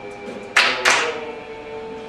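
Live a cappella group holding a sustained chord. Two sharp percussive hits, about a third of a second apart, come about half a second in and are the loudest sounds.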